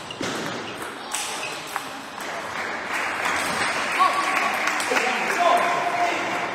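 A table tennis ball clicking sharply off bats and the table, three hits in the first two seconds of a rally. It is followed by the echoing sports-hall background of voices and ball pings.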